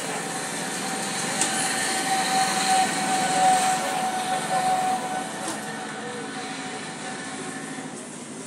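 Vehicle noise, with one steady tone held for about four seconds starting about a second in, then fading.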